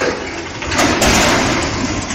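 Truck engine running, then, about a second in, a loud noisy crash lasting about a second as a loaded truck-mounted crane tips over.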